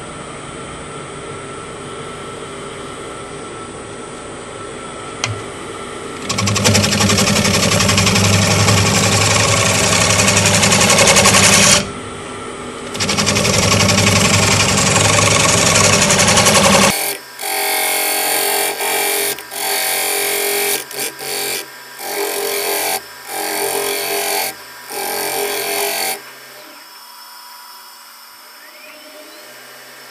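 Wood lathe spinning a sugar maple crotch bowl while a bowl gouge cuts it. The lathe hums steadily at first. About six seconds in, the gouge cuts in two long loud passes with a short break between them. After that comes a run of short cutting bursts that break off abruptly, and near the end the lathe runs on quietly without cutting.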